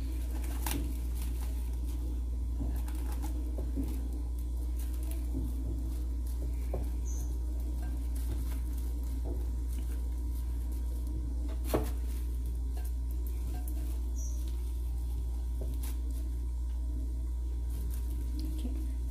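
Plastic cling film being pressed and smoothed by hand onto soft filling in a glass dish: faint crinkling and light ticks, with one sharper click about twelve seconds in. A steady low hum runs underneath.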